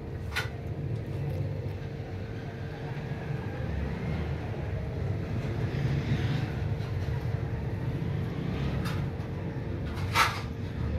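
Steady low background rumble with a constant hum, broken by a couple of faint clicks.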